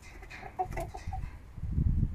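Hens clucking softly as they feed, a cluster of short clucks around the middle. A low rustling noise builds near the end.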